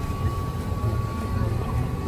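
Tour boat's motor running steadily, a low hum with a faint steady high whine over it.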